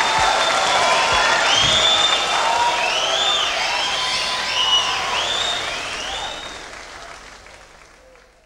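Concert audience applauding, with high calls rising and falling in pitch over the clapping, fading out over the last couple of seconds.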